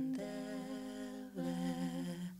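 Three women singing a cappella in close harmony, holding long sustained chords, with a chord change about a second and a half in as the improvised piece draws to its close.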